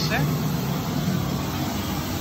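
Pink noise from a Midas M32R mixer's built-in oscillator, played through a stage monitor speaker as a steady, even hiss with a full low end. It is the test signal used to measure and equalise the monitor.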